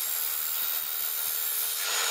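Mitre saw running and cutting through a metal tube: one loud, steady, even sawing noise with no let-up.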